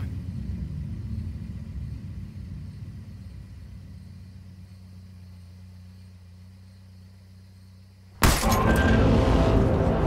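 Low, steady car engine rumble heard from inside the cabin, fading gradually. About eight seconds in, a sudden loud hit cuts in and carries on as loud music.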